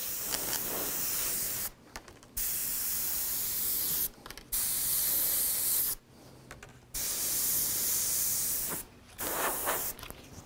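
Gravity-feed airbrush spraying paint in four bursts of hiss, each lasting one and a half to two seconds, with short gaps where the trigger is let off.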